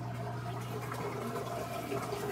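Washing machine running: a steady rush of water over a low, even hum.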